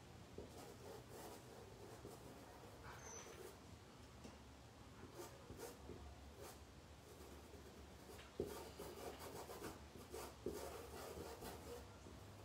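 Faint scratchy rubbing of a paintbrush working purple fabric paint into cloth, stroke after stroke, a little louder in the last few seconds.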